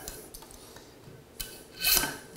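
Plastic strap of a tile leveling clip being drawn tight through its clip by a tensioning pliers, a small click and then a short rasp near the end, like a zip tie being cinched.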